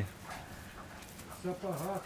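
A puppy gives a short, high whine about one and a half seconds in, calling for attention. A man says a word right after it.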